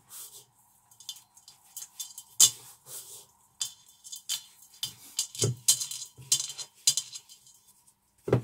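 Bath bomb mixture being scooped and scraped around a stainless steel mixing bowl while a mould is filled, in irregular scrapes and knocks against the metal; the sharpest knock comes about two and a half seconds in.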